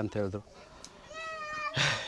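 A cat meowing once: one call of under a second, falling slightly in pitch.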